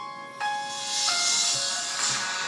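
Phone ringtone playing a melody of steady electronic notes that changes pitch every half-second or so.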